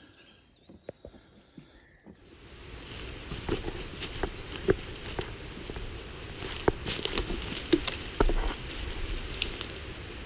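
Footsteps on a dry forest floor of pine needles and twigs, with irregular twig crackles and rustling close to the microphone. It is quiet for about the first two seconds before the walking noise sets in.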